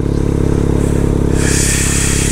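Motorcycle engine running at a steady low speed while riding, its note holding an even pitch, with a brief hiss over it near the end.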